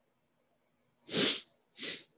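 Two sharp bursts of breath from a person close to the microphone, about half a second apart, the first louder and longer.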